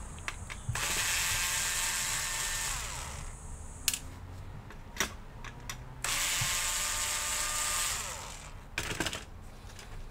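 Bosch cordless screwdriver motor running twice, each time for about two and a half seconds, then winding down with a falling whine; a few sharp clicks fall between and after the runs.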